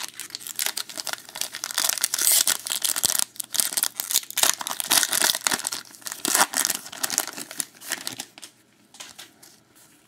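Foil trading-card pack wrapper being torn open and crinkled by hand, a dense crackling that dies down after about eight and a half seconds.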